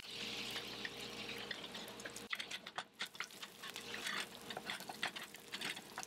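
Tofu scramble filling sizzling in a frying pan: a steady crackling hiss with scattered small pops.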